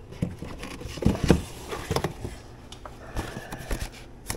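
Cardboard packaging rustling and knocking as a small box is pulled out from inside a bike's shipping carton, with a few louder knocks about a second in.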